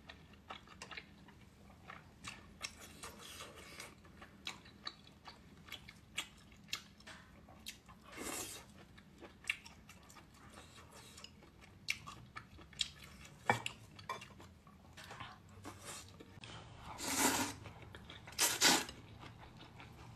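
Close-up eating sounds: chopsticks clicking against a glass bowl of noodle soup, with chewing. There are many short, scattered clicks, and a few longer, louder sounds about eight seconds in and near the end.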